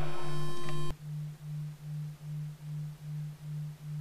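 A low electronic tone pulsing evenly, about two and a half beats a second. For the first second a louder, steady, higher-pitched hum sounds over it, then cuts off abruptly with a click, leaving the quieter pulsing tone.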